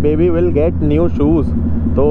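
A man talking while riding, over a steady low drone from the motorcycle and the road.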